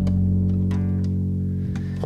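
Plucked double bass and acoustic guitar playing an instrumental bar between sung lines: low bass notes ringing on, with a few light plucks.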